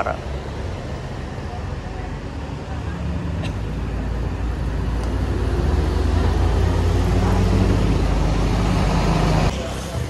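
Intercity coach's diesel engine running as the bus drives up and passes close by. Its low rumble grows steadily louder as it draws level, then stops abruptly near the end.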